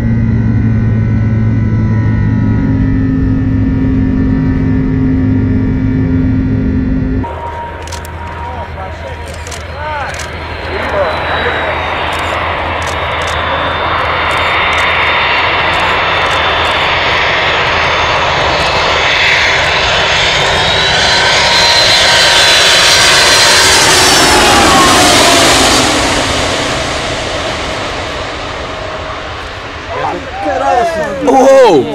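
Steady low drone of jet engines heard from inside an airliner cabin. About seven seconds in it cuts to a twin-jet airliner making a low pass over an airfield: its engine noise builds to a loud peak and then falls in pitch as it goes by, with sharp clicks in the first seconds of the pass.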